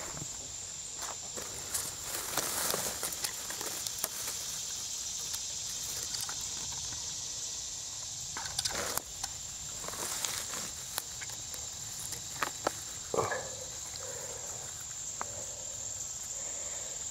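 A steady, high-pitched drone of insects, crickets or katydids, runs through a summer pine wood. Over it come short rustles and crackles from dry pine needles and brush being pushed aside and stepped on, loudest about 2.5 s, 9 s, 10 s and 13 s in.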